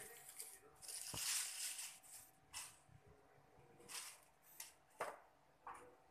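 Crinkling plastic packaging and handling of a small plastic phone clamp: a longer rustle about a second in, then shorter rustles and two sharp clicks.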